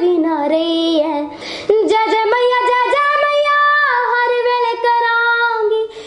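A young girl singing a Punjabi song, holding long notes with sliding ornaments between pitches. She takes a short breath about a second and a half in.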